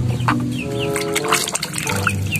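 Chickens clucking over a background music track of held notes, with short high chirps and scattered sharp clucks.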